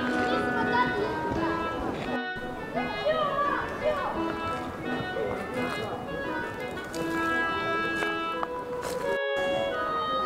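Music of long, held notes, with indistinct voices mixed in behind it. The sound cuts out completely for a split second twice, about two seconds in and again near the end.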